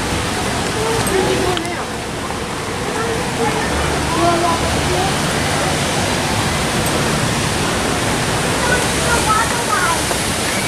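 A steady, loud rushing noise like running water, with people talking faintly in the background.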